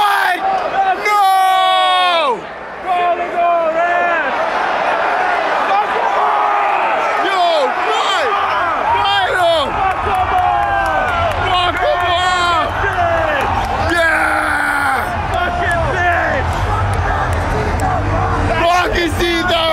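Hockey arena crowd of many voices yelling and shouting at once, with one loud falling yell about a second in; a low rumble joins the crowd noise from about eight seconds on.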